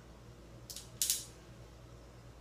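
Homemade pulley bow being drawn back, its string sliding over the limb-tip pulleys: two short scraping hisses just before and at about a second in, the second louder, over a steady low hum.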